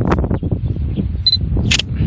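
Wind buffeting the microphone, with a short electronic beep just past a second in and, right after it, a brief camera shutter click.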